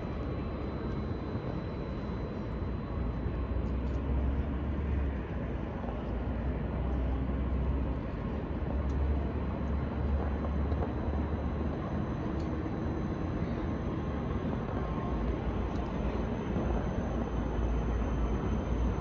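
Distant, steady rumble of rail traffic and city noise around a large railway station, with a deeper low rumble that swells and fades a few times.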